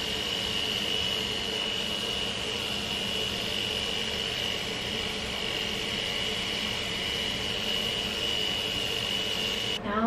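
Small battery-powered pen-style facial hair trimmer running against the cheek with a steady high whine over a hiss as it shaves off facial peach fuzz; it cuts off near the end.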